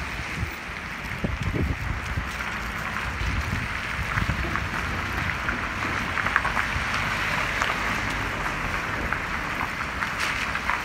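Heavy rain with small ice pellets pattering on wet pavement as a dense hiss full of tiny ticks, with wind rumbling on the microphone, strongest about a second in.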